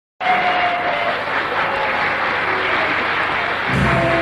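Audience applauding, and near the end the orchestra starts to play.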